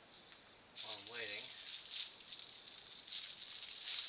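Hookah being drawn on: the water in the base bubbles and gurgles, with an airy hiss through the hose, starting about a second in.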